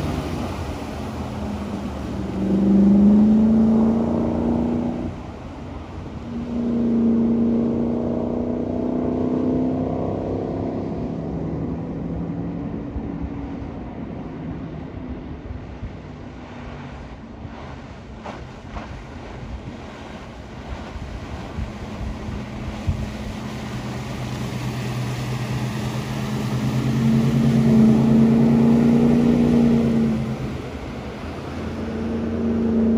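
Inboard engine of a 2023 Nautique S23 wake boat running at speed as the boat makes passes, with water rushing off the hull. The engine is louder twice in the first ten seconds, fades to a faint hum in the middle while the boat is farther off, and builds again near the end.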